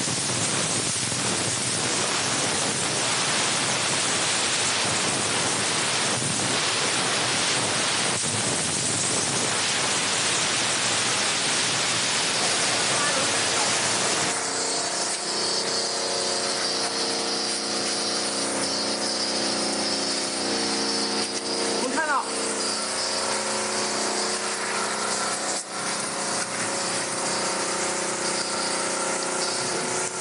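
A steam car washer's dry-steam jet hisses steadily for the first half. At about the midpoint the sound switches abruptly to the machine's high-pressure cold-water pump running with a steady multi-tone hum while its water jet sprays.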